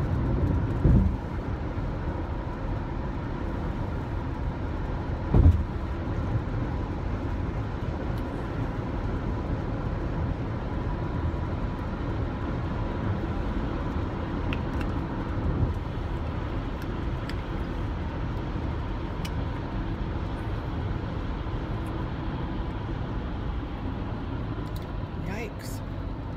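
Steady road and engine noise heard from inside a car's cabin while it drives at highway speed, a continuous low rumble. A short thump comes about five seconds in, and a smaller one about a second in.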